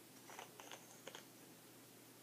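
A few faint clicks and light scrapes of a plastic cosmetic tube and its cap being handled, all within the first second or so.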